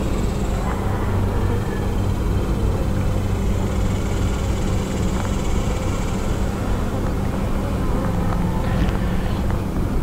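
Honeybees buzzing around an open hive in a steady, unbroken drone while a brood frame full of bees is lifted out and inspected.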